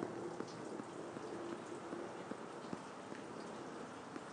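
Faint room tone: a low, even hiss with scattered light ticks.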